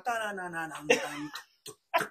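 A man's voice drawn out on a falling pitch, then a sharp cough about a second in, and another short burst near the end.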